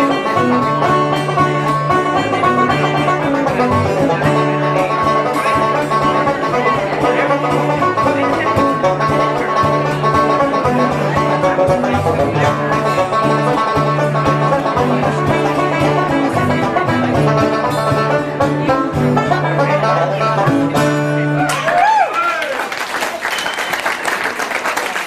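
Live banjo-led folk tune with guitars, strummed and picked over a steady low bass line. The tune ends about 22 s in and applause and cheering take over.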